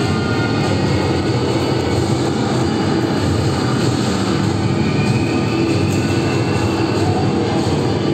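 A loud, steady rumbling din with music faintly mixed into it.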